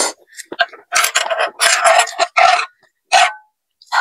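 A person eating ramen: about five short, loud puffs of breath through the lips, together with mouth-open chewing sounds.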